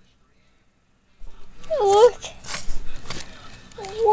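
Near silence for about a second, then clicks and rustles of a clear plastic watch display case being handled. About two seconds in comes a short vocal sound that bends up and down.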